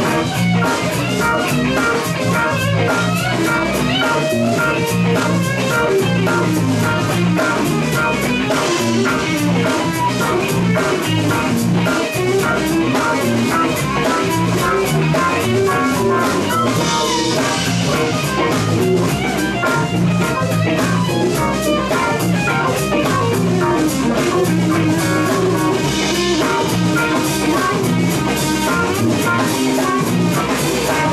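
Live band playing an instrumental blues-rock groove: electric guitars over electric bass and drum kit, with keyboard.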